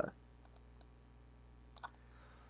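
A few light clicks over quiet room tone, the loudest a quick double click near the end: a stylus tapping on a pen tablet while handwriting on a slide.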